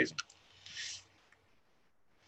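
Two quick clicks, then a short airy hiss of about half a second as a drag is pulled through a vape.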